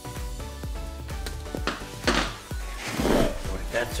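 Screwdriver turning a screw into a black anodised aluminium V-slot bracket, with a string of small metallic clicks and knocks of tool and hand on the part and the wooden table, over background music.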